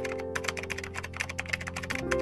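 A typing sound effect, a quick run of keyboard-like clicks, laid over background music with sustained notes.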